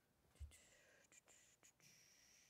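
Near silence in a meeting room: a soft low thump about half a second in, then faint hiss and a few light clicks.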